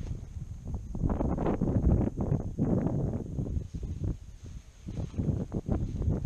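Gusty wind buffeting the microphone in uneven surges, with a lull about four to five seconds in.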